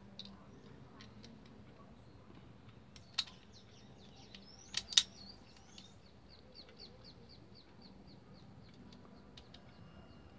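Hard plastic clicks as a Bluetooth speaker's plastic button strip is pressed and snapped into place on its housing, the sharpest two close together about five seconds in. Faint high chirps repeat about four times a second through the second half.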